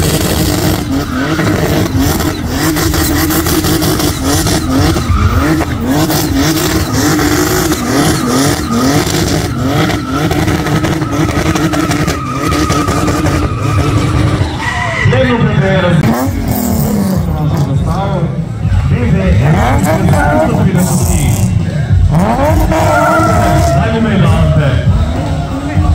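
BMW E30 drift car's engine held at steady revs while its rear tyres spin in a smoky burnout, with tyre noise underneath. About two-thirds of the way through the revs swing down and up, and near the end another car's engine revs up.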